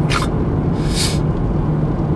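Steady road and engine rumble inside a moving car's cabin with the windows up. Two short hisses cut in, one right at the start and a longer one about a second in.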